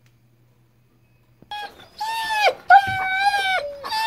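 German Shepherd whining: after a near-silent start, a series of high, drawn-out whines begins about one and a half seconds in. These are the impatient cries of a dog waiting to be fed.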